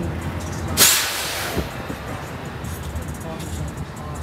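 Low steady hum of a vehicle driving slowly, heard from inside the cab. About a second in, a sudden loud hiss cuts in and fades away over about a second.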